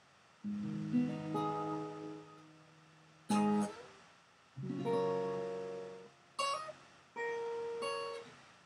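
Acoustic guitar played alone: chords that ring out and fade, a new chord struck about every one to two seconds after a brief quiet start, with one short, sharp strum about three seconds in.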